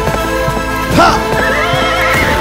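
Dramatic background music with a horse neighing loudly about a second in, over the beat of galloping hooves.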